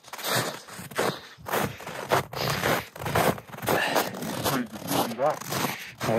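Irregular crunching and scraping from someone moving about on foot, with clothing rustling, several bursts a second. A voice is briefly heard near the end.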